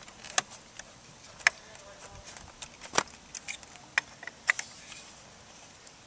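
A plastic zip tie and wires handled by hand as the tie is wrapped around a motorcycle frame tube and its end threaded: scattered, irregular light clicks and ticks, the sharpest about three seconds in.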